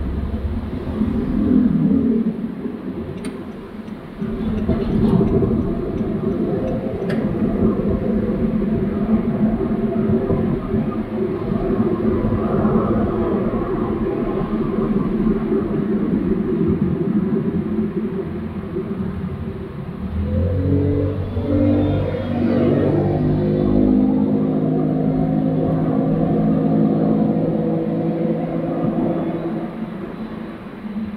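Steady road and engine noise heard from inside a car moving through city traffic. About two-thirds of the way through, a pitched hum joins in and shifts up and down in steps.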